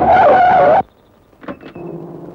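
Car tyres screeching in a short, loud squeal that wavers in pitch and cuts off abruptly under a second in. Two short clicks and a low steady hum follow.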